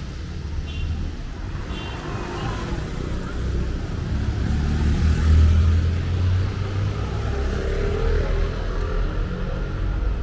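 Street traffic rumble, with a motor vehicle, likely the motorcycle riding toward the camera, passing close and loudest about halfway through.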